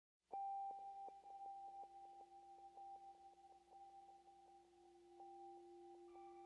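Faint electronic intro soundtrack: two steady pure tones, one higher and one lower, come in suddenly just after the start and hold, with a scatter of short soft ticks over them.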